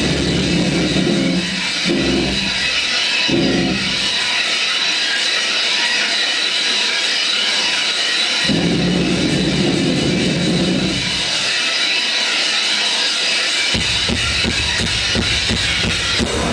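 Live rock band playing loud through a venue PA: heavy low chords stop and start over a high hissy sustained guitar sound, then another long low chord, and drums come in thickly near the end as the song builds.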